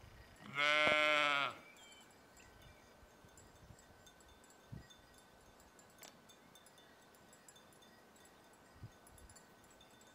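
A domestic sheep bleating once, a single call of about a second, starting about half a second in.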